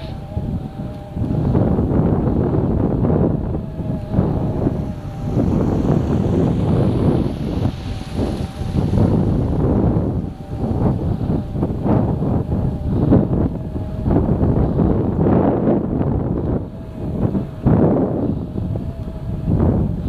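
Engine of a small off-road vehicle running at a low, steady speed over snow, with a faint wavering whine, and wind buffeting the microphone so the level swells and dips.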